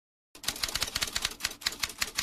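Typing sound effect: a quick run of keystroke clicks, about ten a second, starting after a brief silence and accompanying text typed onto the screen.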